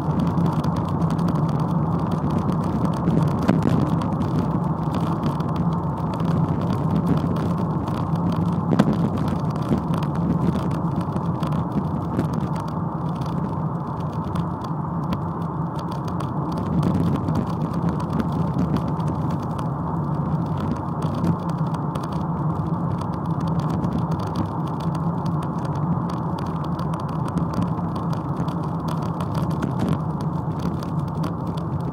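Ford Mondeo Mk3 heard from inside the cabin: steady engine and road noise from the car on the move.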